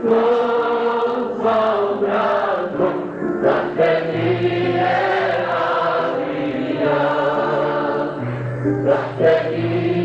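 A choir singing an ilahija, a Bosnian Islamic devotional song, in long held notes in several parts over a low sustained tone.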